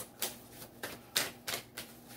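A tarot deck being shuffled by hand: a run of short, irregular card clicks and slaps.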